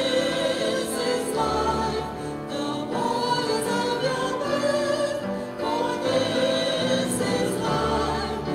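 Church choir singing the Mass's opening gathering hymn, a steady sung melody over sustained low accompanying notes.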